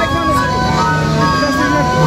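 Dirashe fila ensemble: many end-blown pipes played together, each holding a single note. The notes overlap and change in quick turns, making a continuous interlocking chord.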